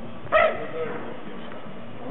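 A dog barking once, a single short, sharp bark about a third of a second in, over a steady outdoor background murmur.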